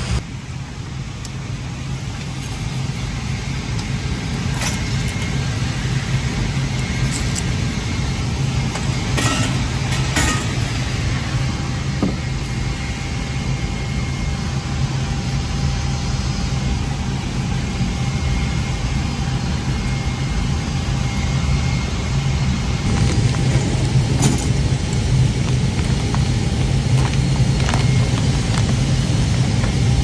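Steady low machinery drone, with a few light metallic clinks from a wrench and the oxygen bottle's fittings being handled.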